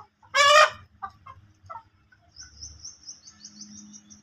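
A flock of desi chickens clucking, with one loud squawking call about half a second in. From about halfway through, a fast run of high-pitched chirps continues over the clucks.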